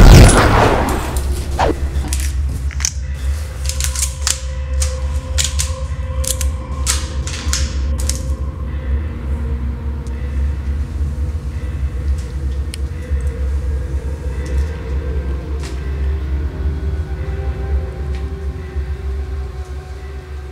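Film score: a low, rumbling drone with long held tones, opening on a loud boom. A quick run of sharp cracks fills roughly the first eight seconds, then thins out to a few.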